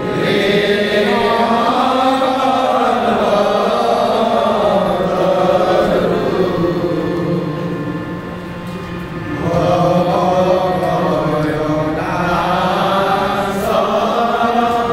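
Kirtan: voices chanting a devotional melody, with sustained harmonium tones underneath. The chant eases off about eight seconds in and swells again a moment later.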